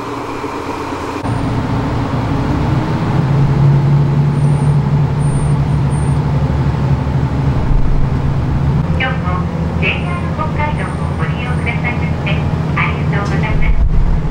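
Diesel railcar under way, heard from inside the car: a steady low engine and running drone that sets in about a second in, with a voice over it in the later seconds.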